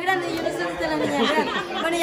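Several people talking over one another at once, a jumble of overlapping voices in a room.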